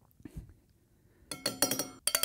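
Metal jigger clinking repeatedly against a stainless steel cocktail shaker tin, with a ringing metallic tone, as thick tangerine purée is tapped out of it. The clinking starts about a second and a half in, after a faint soft knock near the start.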